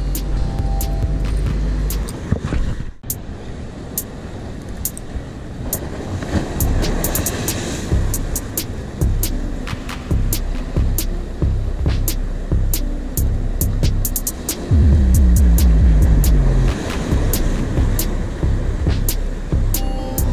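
Wind rumbling on the microphone, with many scattered clicks and knocks from handling the line, rod and reel. The sound drops out briefly about three seconds in and grows louder in the second half.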